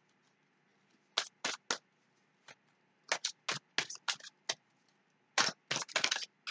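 Tarot cards being shuffled by hand: short crisp snaps of the cards, a few spaced out at first, then a quicker run of them from about three seconds in, and more near the end.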